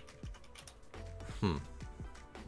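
Fruit Party slot game sound effects as the free-spins round ends: a few quick clicks, then a falling-pitch swoop about one and a half seconds in, over faint game music.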